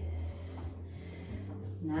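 Ujjayi breathing: one long, slow breath drawn audibly through a narrowed throat, over a low steady hum.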